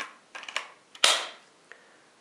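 Hitachi DS12DVF3 drill-driver's 12 V nickel-cadmium battery pack being slid onto the handle: a few plastic clicks, then a sharp snap about a second in as the pack latches home.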